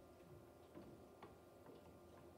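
Near silence: hall room tone with a faint steady hum and a few faint, irregular clicks and ticks.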